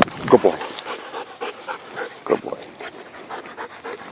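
Dog panting after retrieving a shot bird, with short bits of voice over it about half a second in and again past the two-second mark.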